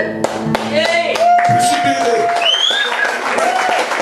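Audience clapping with voices calling out and a high rising whistle about two and a half seconds in, as the band's last guitar chord rings out and stops within the first second or so.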